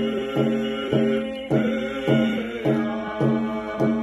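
Hide-covered hand drum beaten with a stick in a steady beat of a little under two strikes a second, under a man and a woman singing together.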